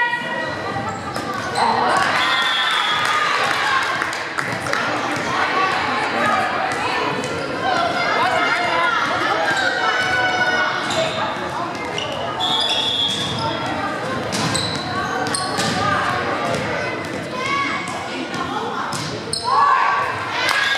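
Indoor volleyball play: the ball struck by hands and hitting the hardwood gym floor in sharp smacks, with shouting voices of players and spectators echoing through the hall and a few short high squeaks.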